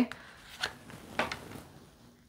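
Tarot cards being handled in the hands: a few brief, quiet card slides and rustles.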